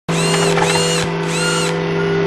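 Sound effects for an animated logo intro: a steady electronic hum with three short mechanical servo-like whirs, each rising, holding and falling over about half a second.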